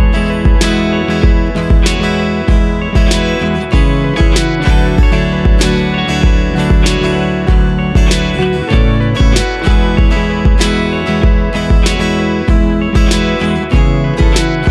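Acoustic guitar playing a looped, layered arrangement: strummed and picked chords with percussive strikes over a steady low thumping beat.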